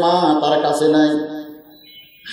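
A man preaching in a drawn-out, chanting delivery, holding one long tone and trailing off about one and a half seconds in.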